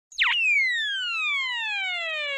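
Electronic intro sound effect: a quick chirp, then a long synthesized tone that slides steadily down in pitch.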